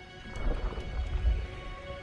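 Soundtrack music holding sustained notes, with a deep low rumble that swells in about half a second in and fades near the end.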